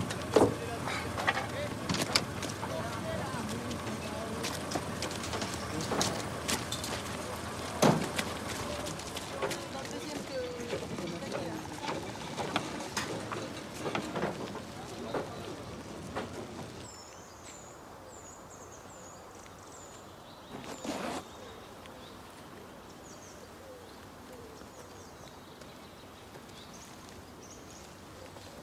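Outdoor noise with faint murmured voices and scattered clicks and knocks. After a cut, a quieter woodland hush with a run of small high bird chirps and one short burst of noise.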